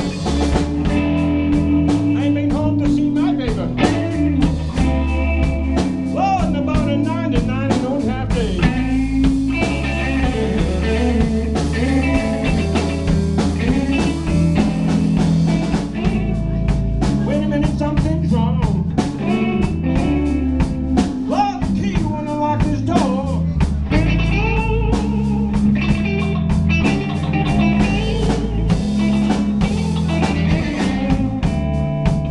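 Live blues-rock band playing an instrumental passage: electric guitars with bent notes over bass and drum kit.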